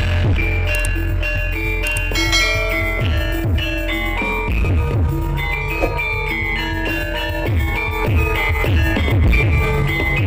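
Gamelan-style music: metallophones play a stepped melody over heavy, steady bass and drum strokes.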